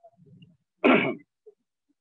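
A man clearing his throat once, a short, loud burst about a second in.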